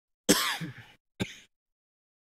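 A person clearing their throat close to a microphone: a longer rasping burst followed about a second later by a short second one.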